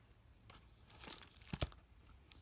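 Paper pages of a hardcover book rustling as they are turned, starting about a second in, then the book shut with a short thump near the end.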